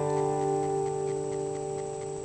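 Steel-string acoustic guitar's last strummed chord ringing out and fading. Faint regular ticking, about four a second, runs under it.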